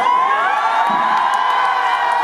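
Audience cheering and whooping loudly, many high voices shouting at once.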